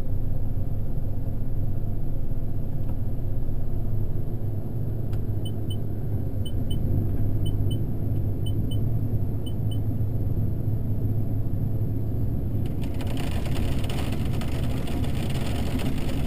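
Corn combine running steadily, heard from inside the cab: a low engine and machine hum. A few seconds in, the cab monitor gives five short double beeps, about one a second. Near the end a louder rattling hiss joins in.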